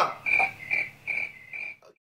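A short high sound, repeated four times at one pitch, about two a second.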